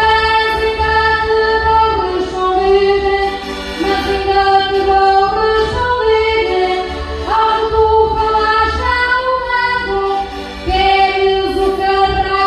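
A woman singing a verse of Portuguese desgarrada (cantares ao desafio), amplified through a microphone, in long held notes.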